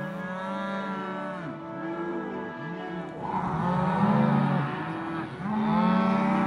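Cattle in a herd mooing: several long, drawn-out moos follow one another and partly overlap, with the loudest about halfway through.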